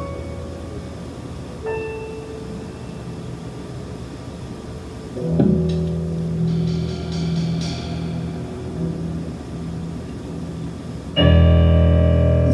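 Electric keyboard playing sparse held chords and single notes in a quiet instrumental passage, with a fuller sustained chord with bass underneath entering about five seconds in. Near the end the full band comes back in loudly on a held chord.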